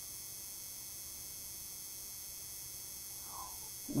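Steady low hum and hiss of room tone on a livestream microphone, with one faint short sound about three seconds in.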